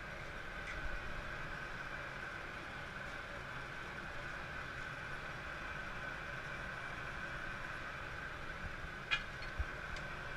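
Steady hum of glass-studio blowers and burners with a constant high whine. A few light clicks of glass being set in the kiln come about a second in and twice near the end.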